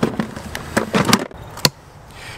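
Handling noise as a plastic cache container in a zip bag is put back into a wooden birdhouse-style box: rustling with several sharp knocks and clicks, clustered about a second in and one more near the end.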